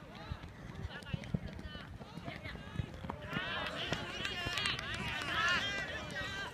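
Several young players shouting calls to one another across the football pitch, their voices overlapping and growing louder from about three seconds in, over scattered low thuds of play on the turf.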